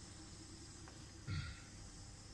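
Faint steady background noise with one brief low sound, like a breath or murmur, about a second and a quarter in.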